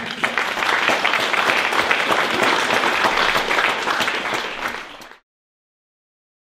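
Audience applauding a poetry reading. The applause is dense and steady, eases slightly, then cuts off suddenly about five seconds in.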